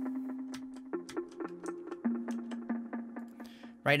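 Korg M1 'Perc-Organ' organ bass preset playing a 90s-style bass line in quick repeated notes. It steps to new pitches about one second and two seconds in.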